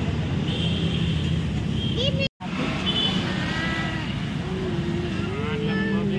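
Busy roadside street noise: a steady traffic rumble with voices in the background. The sound cuts out completely for a moment a little over two seconds in.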